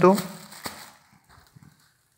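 Foil emergency bag crinkling as it is picked up and handled, fading out within about a second, with one sharp click partway through and only faint rustles after.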